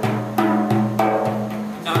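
Tar, a North African frame drum, struck with the fingers about four times: deep ringing bass strokes (doum) from the middle of the skin alternating with sharper edge strokes (tek).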